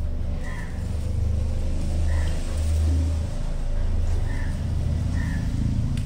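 Steady low hum of an engine running, with short high chirps recurring every second or so.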